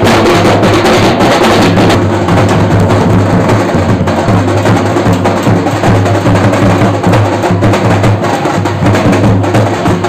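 Loud, continuous drumming and percussion with a fast, dense beat of sharp strikes.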